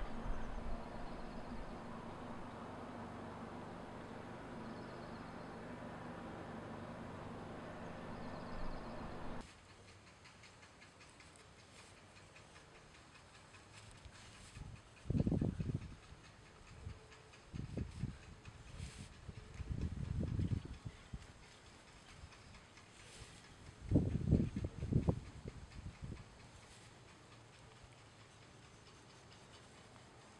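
Folding knife blade shaving thin feather curls from a peeled wooden stick: several short bursts of scraping strokes in the second half, with quiet between them. A steady background hum fills the first third and stops suddenly.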